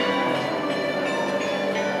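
Chiming bells of a street automaton clock ringing its hourly tune, many overlapping notes ringing on as new ones are struck.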